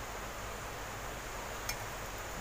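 Steady low hiss of background noise, with one faint tick about one and a half seconds in.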